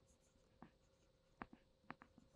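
Very faint light taps of a stylus writing on a pen tablet, three small clicks spread through the moment, over a faint steady hum.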